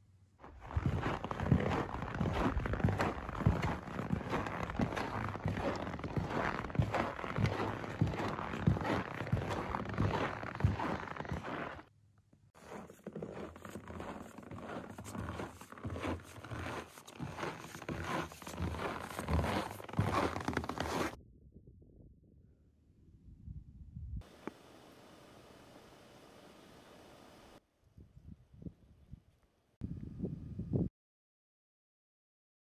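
Footsteps crunching and scraping in snow, a dense run of crunches for about twelve seconds and, after a short break, another run of about nine seconds. A steady faint hiss follows later.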